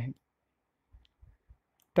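A man's voice trails off, then a few faint, soft clicks come in quick succession about a second in, before speech resumes.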